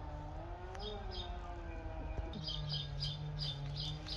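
A small bird chirping: two quick chirps about a second in, then a steady run of about three short chirps a second from the middle on. Under it runs a steady low drone that wavers slightly in pitch.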